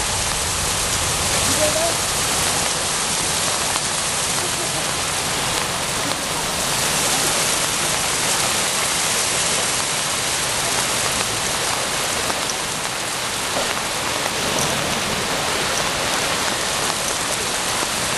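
Steady rushing of floodwater pouring into a washed-out roadbed.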